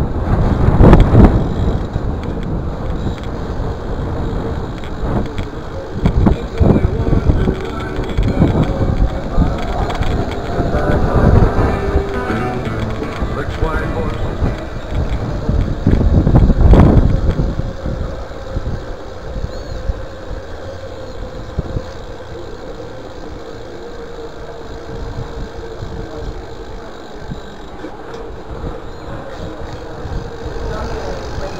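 Bicycle rolling over brick pavers, heard through a chest-mounted camera, with wind buffeting the microphone. The loudest gusts come about a second in and again around sixteen seconds.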